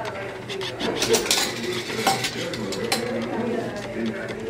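A coin clinking through an Automatic Products International vending machine's coin mechanism and dropping into the coin return cup: a series of sharp metallic clicks and clinks, busiest about a second in.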